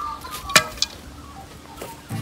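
Birds chirping, with a sharp click about half a second in and a lighter click soon after.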